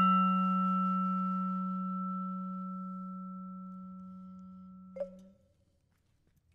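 A low vibraphone note, struck just before, ringing and slowly fading, then stopped short with a light click about five seconds in.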